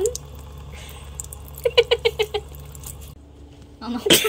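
A thin stream of tap water running faintly over a grape held in the fingers, stopping about three seconds in. About halfway through comes a short, high-pitched run of giggles.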